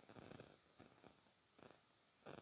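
Faint, short spurts of a household sewing machine running, each a quick rattle of needle strokes, as a pleated fabric strip is stitched along its edge.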